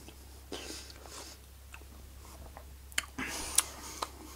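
Soft chewing of a mouthful of fried breakfast, with a couple of light clicks of a knife and fork against the plate about three seconds in.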